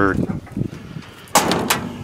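A steel pickup-truck cab door, on a 1969 Ford F-250, slammed shut once about a second and a half in: a single sharp bang with a short ringing tail.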